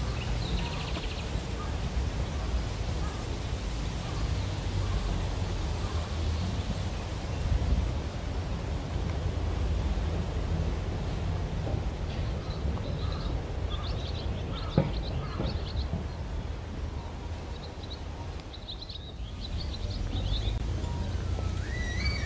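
Birds calling in short, high chirps, in scattered clusters, over a steady low outdoor rumble.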